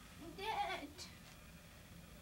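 A girl crying: one wavering, sobbing wail about half a second long, followed by a short click.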